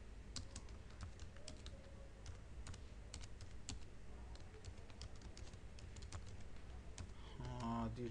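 Typing on a computer keyboard: a run of irregular keystrokes as a line of text is entered.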